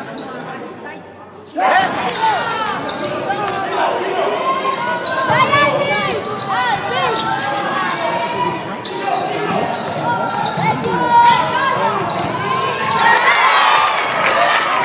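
Basketball game play in a large indoor hall: the ball bouncing and shoes squeaking on the court over a background of voices, starting abruptly about a second and a half in after a quieter stretch.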